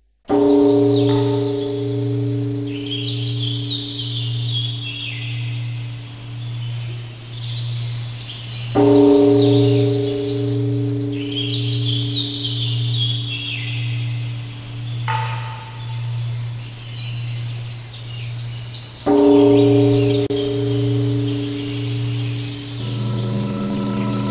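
A large temple bell struck three times, about ten seconds apart. Each stroke rings on for several seconds over a low, pulsing hum. Birds chirp throughout.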